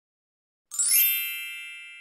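A single bright chime sound effect rings out about two-thirds of a second in, several high clear tones sounding together and fading slowly.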